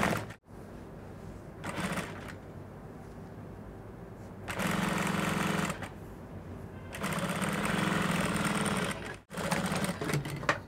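EMEL industrial lockstitch sewing machine stitching a side seam in several short runs of one to two seconds each, stopping in between, with a faint steady hum while it pauses.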